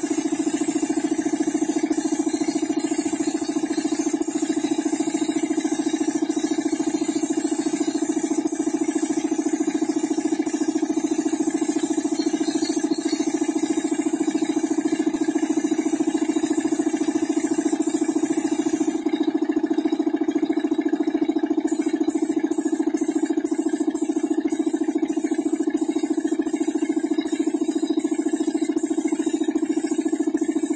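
Compressed-air spray gun hissing as clear coat is sprayed onto a van body panel, over a loud, steady mechanical hum. The hiss breaks off briefly about two-thirds of the way through, then carries on with faint regular ticks.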